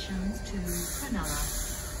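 A person's voice speaking, with two short bursts of hiss about a second in.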